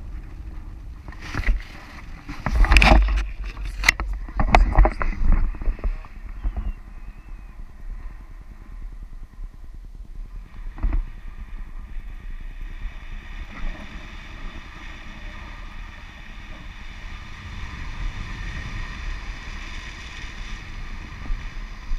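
Wind rushing over an action camera's microphone in flight under a tandem paraglider, a steady airflow noise. In the first few seconds loud knocks and rustles of the camera being handled stand out, with one more knock near the middle.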